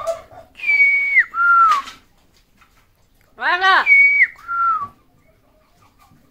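Amazon parrot whistling a two-note phrase, a held high note that drops to a lower one, twice. The second time it comes straight after a short rising-and-falling squawk.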